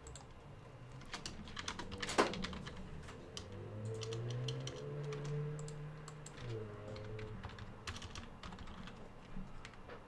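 Computer keyboard being typed on in short, irregular runs of keystrokes, with one louder click about two seconds in. A low steady hum joins in for about three seconds in the middle.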